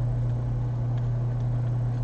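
A steady low hum in the recording, the constant background drone of the microphone setup heard between words.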